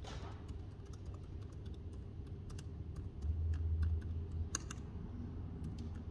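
Typing on an ASUS laptop keyboard: irregular light key clicks over a steady low hum. A louder low rumble lasts about a second, a little past halfway.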